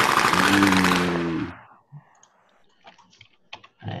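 Sound from a fireworks cake's demo video: a loud rush of noise with a low tone underneath for about a second and a half, cut off abruptly. A few scattered computer clicks follow.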